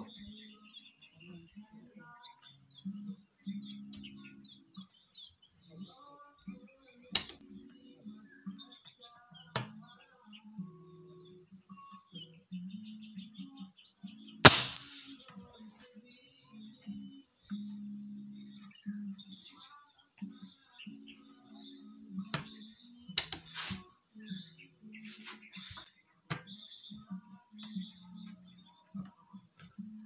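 Steady high-pitched drone of crickets. About halfway through, one sharp, loud air rifle shot stands out, with a few fainter clicks before and after it.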